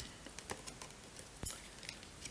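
Faint taps and rustles of tarot cards being picked up and laid down on a velvet cloth, with a few scattered clicks, the sharpest about one and a half seconds in.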